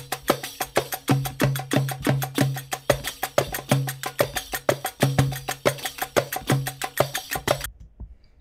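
A percussive audio sample playing back through Ableton Live's Sampler as a fast, even run of sharp hits. A low steady tone from the Sampler's added oscillator sounds under the hits in stretches. The playback cuts off suddenly near the end.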